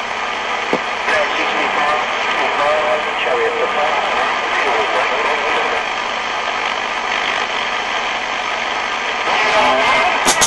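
CB radio receiver hissing with steady band static, a faint, garbled distant voice wavering under the noise.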